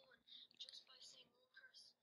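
Faint, thin-sounding speech from a boy's voice played back through an iPod speaker, with the words hard to make out.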